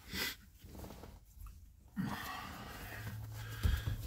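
A man breathing as he bends over to put on his trainers: a few short breaths, then a steadier quiet breathy sound from about halfway.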